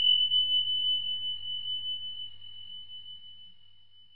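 A single high-pitched ringing tone, struck sharply and fading slowly over about four seconds, with a faint low hum beneath it.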